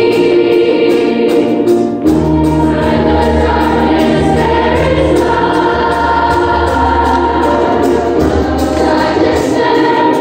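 Youth choir of children's voices singing a slow song with long held notes, moving into a new phrase about two seconds in.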